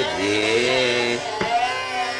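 Male voice singing Raag Yaman (Aiman) in Hindustani classical style: a held note that glides slowly in pitch, with a single sharp drum stroke about one and a half seconds in.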